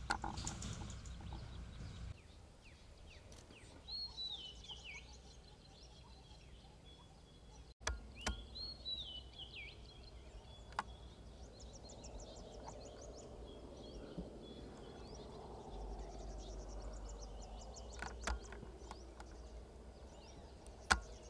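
Faint outdoor ambience with birdsong: a whistled bird call that glides down in pitch, heard twice, over fast high-pitched trills, with a low steady background rumble and a few sharp clicks.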